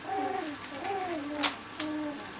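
Black cocker spaniel puppies' play noises: two short, whiny grumbles that rise and fall in pitch, with a sharp tick from paws on newspaper about one and a half seconds in.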